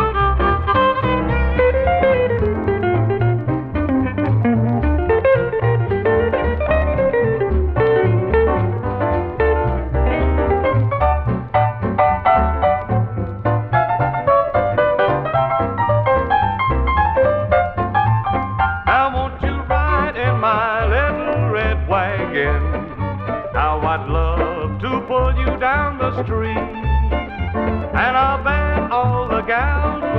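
Country band playing an instrumental passage from a 1950s transcription disc: fiddle and electric guitar leads over a steady bass beat, the sound cut off in the treble. The lead gets brighter and busier about two-thirds of the way through.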